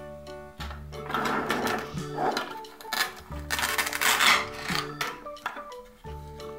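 Light melodic background music, over which plastic toy cake pieces are handled and rubbed against each other, giving two scraping bursts, one about a second in and a longer one around the middle.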